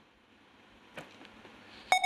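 Near silence with a faint click about halfway, then a short electronic beep tone near the end: a quiz-show buzzer signalling that the team's time to answer has run out.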